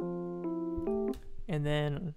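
Software electric piano (the 'Basic Suitcase' preset from Xpand!2, a suitcase-style e-piano) playing sustained chords of the beat's main melody on its own, cutting off about a second in. A man starts talking near the end.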